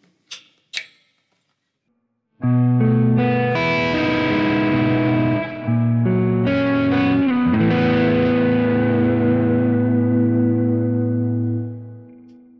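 PRS SE DGT electric guitar on its neck pickup, played through a Kemper profiler with reverb and delay: sustained chords of a short intro begin about two seconds in, with a brief break midway, and the last chord rings out and fades near the end.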